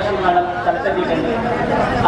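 Only speech: people talking over one another in a crowded room.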